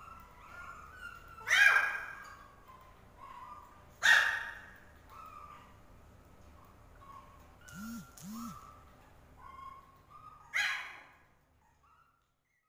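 Pomeranian puppies yapping: three sharp, high yaps, about a second and a half in, about four seconds in and near the end, with fainter short calls between them.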